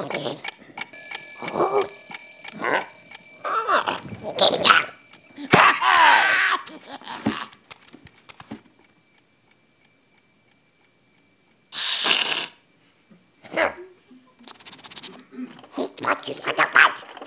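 Stop-motion film soundtrack: cartoon creatures chattering in gibberish over a faint, steady high ringing, as of an alarm clock. The voices stop about eight seconds in. Near the end there is a short hiss and then a knock.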